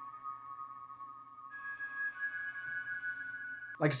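Spitfire Audio LABS 'Ghost Hand Bells' software instrument playing soft, sustained, ambient and ethereal bell tones that ring on and overlap. A higher bell note comes in about a second and a half in.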